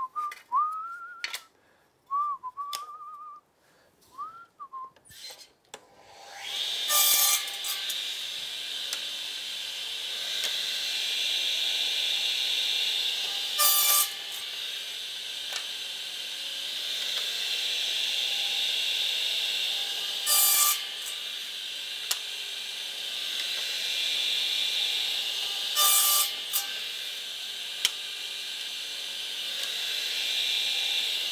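A person whistling a few short notes that rise and fall. From about six seconds in comes a steady hiss, broken by a brief loud burst every six or seven seconds.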